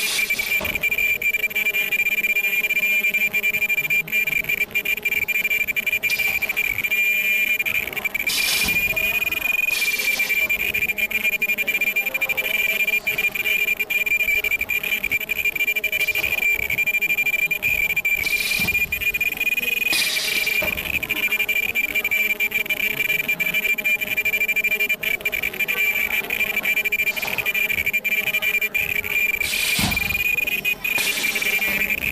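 Ultrasonic non-woven bag bottom welding machine running, giving off a steady high-pitched whine. Short bursts of noise come in two pairs, about eight and about eighteen seconds in, as the press cycles.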